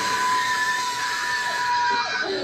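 A young man's long, high-pitched scream, held at one steady pitch for about two seconds and breaking off near the end.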